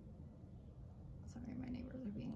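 Faint low room noise, then a woman's quiet, soft voice starting about one and a half seconds in, a murmur or hushed start of a word.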